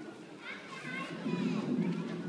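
Children playing, several young voices chattering and calling out over one another, the voices picking up about half a second in.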